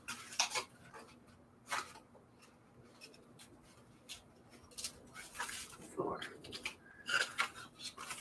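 Paper envelopes being handled and counted: short, scattered rustles and soft slaps of paper and card, several over a few seconds.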